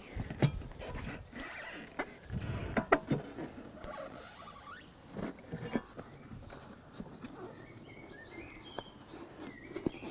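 Small ride-on mower tyre being worked off its wheel rim on a manual tyre changer with a metal tyre lever: scattered rubber squeaks and knocks of the lever and wheel, the loudest knocks about three seconds in, with quieter handling of the inner tube and valve stem after.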